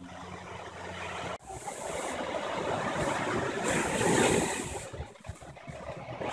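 Small ocean waves breaking and washing up a sandy beach, the rush swelling to its loudest about four seconds in and dying away about a second later. Before that, about a second and a half of steady low hum that cuts off abruptly.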